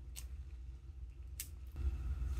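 Two short, crisp handling sounds about a second apart as gloved fingers grip and turn an iPhone battery pack, over a low steady hum.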